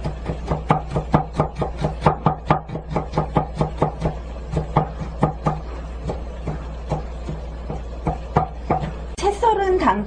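A knife cutting carrot into very fine julienne on a wooden cutting board: quick, even strokes about five a second, thinning out to scattered strokes after about five seconds. A steady low hum runs underneath.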